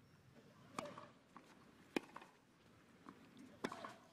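Tennis racket strings hitting the ball three times, sharp and about a second and a half apart: a serve, the return and the next groundstroke of a rally on clay. The middle hit is the loudest, over a faint crowd hush.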